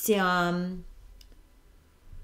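A woman's voice holding one drawn-out hesitation vowel for just under a second, opening with a sharp click, then quiet with a couple of faint clicks.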